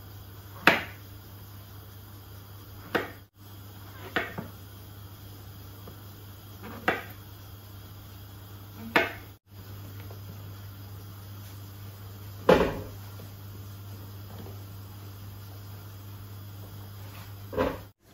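Kitchen knife slicing mushrooms on a bamboo cutting board: a handful of separate sharp knocks of the blade striking the wood, a second to a few seconds apart, over a low steady hum.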